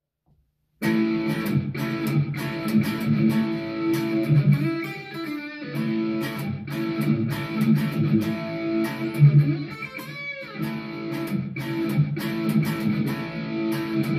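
Epiphone Uptown Kat semi-hollow electric guitar jamming a groove on one chord, with picked chord strokes and single-note fills. It starts about a second in and plays on continuously.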